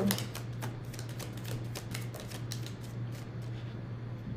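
Tarot cards being shuffled by hand: a quick run of light card clicks that thins out after about two and a half seconds.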